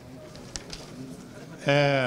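Quiet room murmur with a faint click or rustle from the papers in hand, then about 1.7 s in a man's loud, drawn-out hesitation sound ('eeh') held on one pitch into the microphone.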